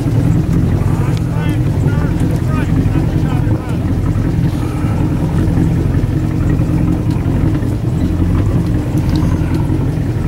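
A boat's engine running steadily with a low, even hum, with faint voices calling across the water.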